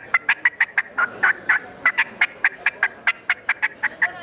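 Gooserbat Double Fit latex diaphragm turkey call, mouth-blown, cutting: a rapid run of short, sharp hen-turkey notes at about five or six a second, with a couple of brief pauses.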